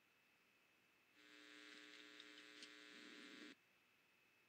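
Faint sound from a horse-race replay video playing in the browser: a steady buzzing tone with a hiss over it, starting about a second in and cutting off abruptly after a little over two seconds.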